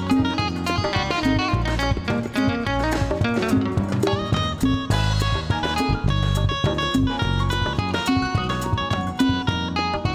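Live band instrumental: an electro-acoustic guitar plays a busy, fast-moving lead line over electric bass, hand drums and drum kit.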